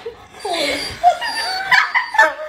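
A person laughing hard, in squealing cries that slide up and down in pitch.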